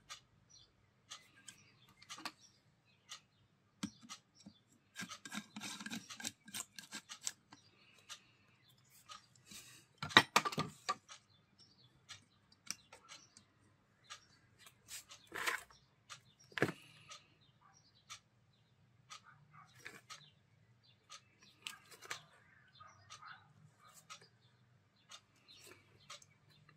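Hands working wires and push-on terminal connectors on the back of an alternator resting on cardboard: scattered small clicks, knocks and rubbing of metal and plastic, with a louder clatter about ten seconds in.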